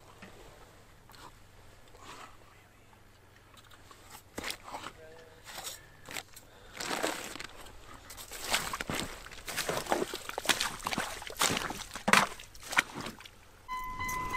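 Boots crunching in wet snow and slush on lake ice while fishing gear and a thermos are picked up. The irregular crunches begin a few seconds in and grow louder and more frequent toward the end.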